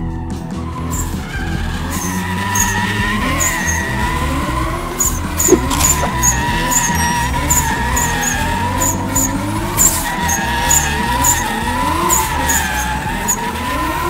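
Datsun 280Z doing donuts: a steady, wavering tire squeal while the engine's revs climb again and again.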